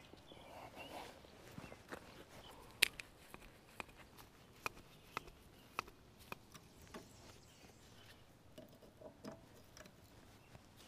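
Faint, irregular clicks and clacks of a hand-lever grease gun being worked on the grease fittings of a finish mower's belt pulleys, with one sharper click about three seconds in.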